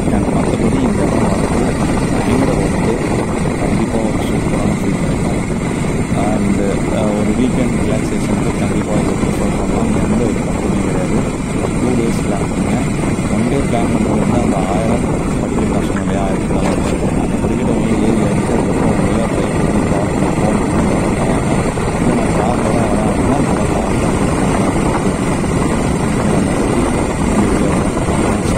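Suzuki Gixxer 155 motorcycle ridden at about 35 km/h: its single-cylinder engine runs steadily under heavy wind rush on the microphone.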